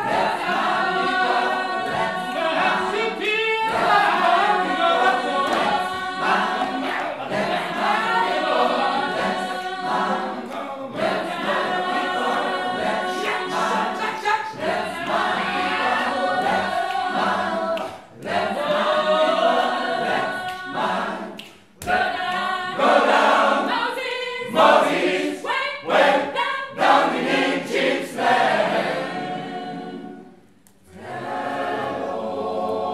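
Mixed amateur choir of women and men singing a cappella in several parts. The held chords break off briefly twice, turn into shorter clipped phrases near the end, then stop.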